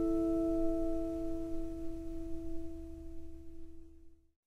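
The last strummed chord of an acoustic guitar song ringing out and slowly fading away.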